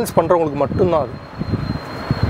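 A man's voice speaking for about a second, then a low, even background noise.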